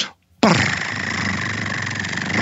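A drum roll that starts suddenly about half a second in and runs at a steady level as an even rattle.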